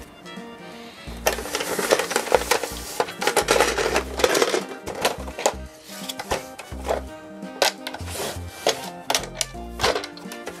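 Hollow plastic Thomas the Tank Engine carry case being handled and opened: a busy run of plastic clicks, knocks and rattles that starts about a second in and thins out after the middle, over steady background music.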